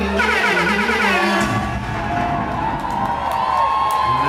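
Concert crowd cheering and screaming over music from the stage, with many high voices rising and falling.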